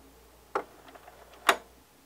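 Vinyl LP at the end of its side with no music left: the turntable stylus picks up a few sharp clicks and pops from the record surface, the loudest about one and a half seconds in, over a faint low hum that cuts off near the end.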